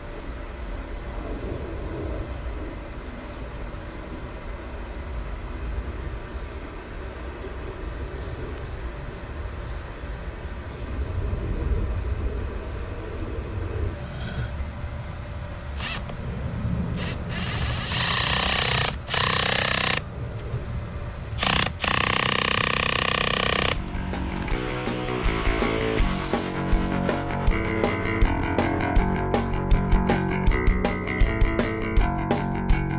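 A red cordless drill-driver runs twice, about two seconds each, working at the top of a newly driven ground rod in the soil, the job being to tighten its clamp. Before that there is only a low rumbling background; after the second run, guitar music comes in and carries on.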